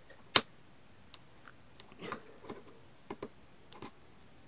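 One sharp plastic click about a third of a second in, then several faint clicks and light handling noises as gloved hands press and move the plastic LCD display frame of a Fluke multimeter.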